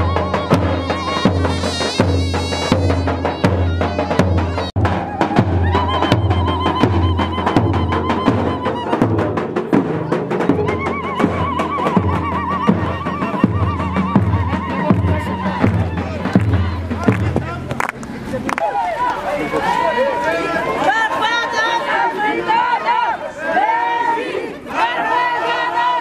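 A large double-headed davul drum beaten with a stick in a steady beat of about one and a half strokes a second, under crowd voices singing. The drumming stops about two-thirds of the way through, and the crowd's voices carry on.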